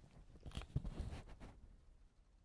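Faint handling noise from a handheld Zoom H1n recorder that is itself recording: a run of small irregular clicks and rubbing as fingers shift on its body and press its buttons.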